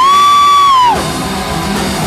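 Live deathcore band, dominated by a single loud, piercing high note held for about a second. The note slides up at its start and drops away at its end, then the band's full sound returns.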